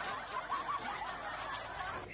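Soft laughter, much quieter than the speech around it.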